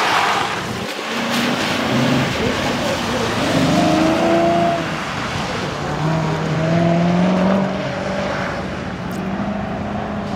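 Chevrolet Camaro's engine revving up and easing off several times as it is driven hard through a cone autocross course, with tyre hiss from the wet pavement underneath.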